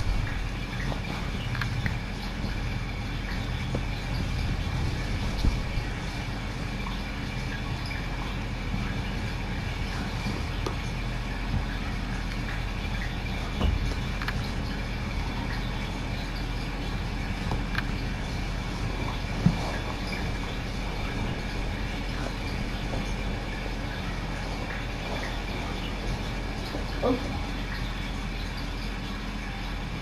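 Steady low hum of the camera's audio, with fleece blanket rustling close to the microphone and a few soft bumps as the blanket is handled.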